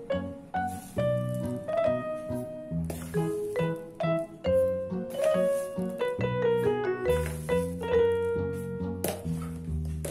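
Instrumental background music: a melody of short piano-like notes over a low bass line.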